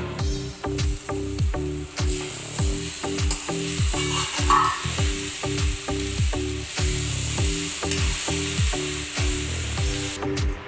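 Vegetable curry sizzling as it fries in a pan, with a spoon stirring it and a short scraping sound about four and a half seconds in. Background music with a steady beat of repeated falling bass notes plays throughout.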